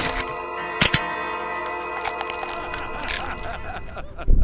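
Music with several steady held tones, broken by two sharp cracks close together about a second in.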